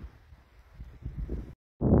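Wind buffeting the microphone: an uneven low rumble that cuts off suddenly into dead silence shortly before the end.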